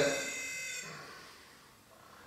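A short electronic buzz from a handheld ghost-hunting device: a steady, high, overtone-rich tone lasting under a second, then fading away.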